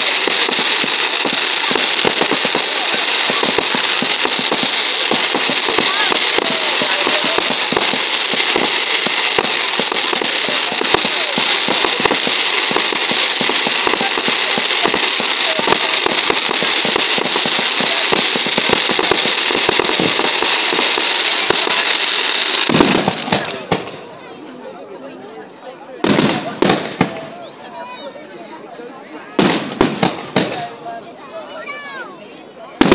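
Fireworks display: a loud, dense, continuous crackling of countless small reports from rising streams of golden crackling sparks, which stops suddenly about 23 seconds in. Two louder bursts of bangs follow near the end.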